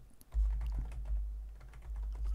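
Computer keyboard typing: a run of quick key clicks, with a low hum underneath.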